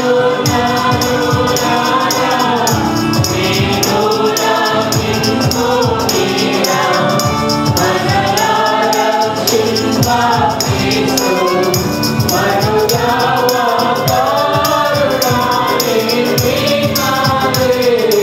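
A mixed choir of men and women singing a Telugu Christian song in unison through microphones, over a steady rhythmic percussion beat.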